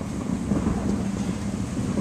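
Wind rumbling on the microphone, with a steady hiss behind it.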